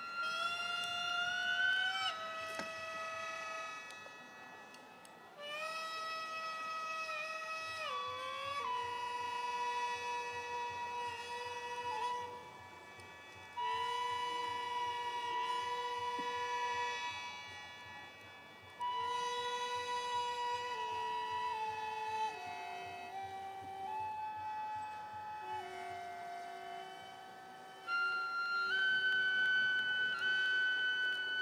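Slow instrumental music: a wind instrument plays long held notes that step up and down in a slow melody.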